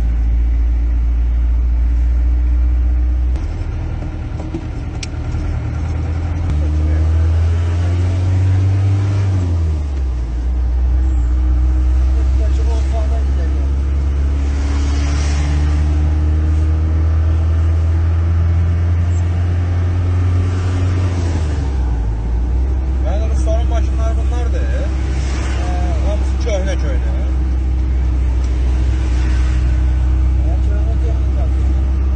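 Car engine and road noise heard from inside the cabin while driving, a steady low drone whose pitch steps up and down several times as the car changes speed and gear.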